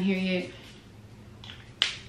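A woman's voice holding a sung note for about half a second, then near the end a single short, sharp snap.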